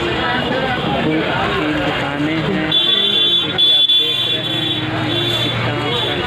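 Busy roadside ambience: voices talking over traffic. From about halfway through, a shrill vehicle horn sounds in a few short blasts.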